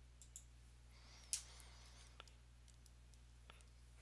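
Near silence: faint steady room hum with a few soft, scattered clicks, the clearest about a second and a third in.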